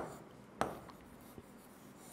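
Pen drawing on a board: faint strokes, with a sharp tap of the pen tip about half a second in and a lighter one later.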